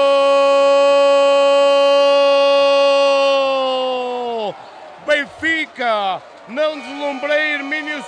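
A man's long, drawn-out goal shout held on one pitch for over four seconds, falling off at the end, followed by rapid, excited commentary.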